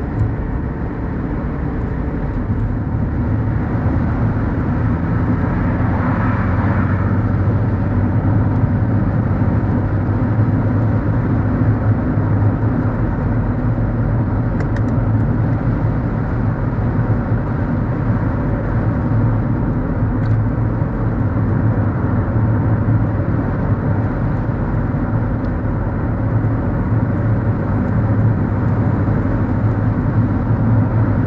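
Steady engine and road noise of a Mercedes-Benz W124 driving along, heard from inside the car, with a strong low hum. A brief swell of higher hiss comes about six seconds in.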